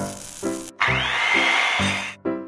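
Welding torch sound effect over background music: about a second in, a loud hiss with a steady high whine rises in and lasts about a second, then cuts off.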